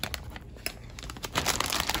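Clear plastic bag around a model kit crinkling as it is handled and set down, a scatter of small crackles that grows denser and louder in the last half second or so.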